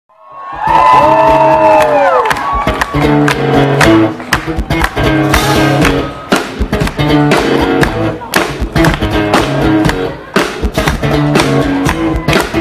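Live steel-string acoustic guitar and bass playing the rhythmic instrumental intro of a song, the guitar picked hard with percussive attacks over repeating low bass notes. A crowd cheers with a falling whoop in the first couple of seconds before the playing settles in.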